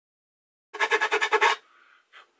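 Hand file or sanding stick scraping in quick strokes on the cut edge of a fiberglass enclosure, starting about a second in and lasting under a second, then fainter rubbing.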